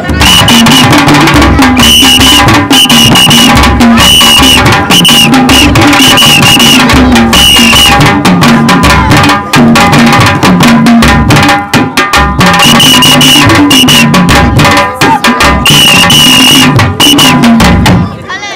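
Traditional Sukuma ngoma music: large wooden drums beaten in a fast, dense rhythm, very loud and distorted. Short high piping notes repeat over the drumming through the first half and again in the later part.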